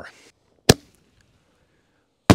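A single sharp bang about two-thirds of a second in: a 5-inch canister shell's lift charge firing it out of its fiberglass mortar tube.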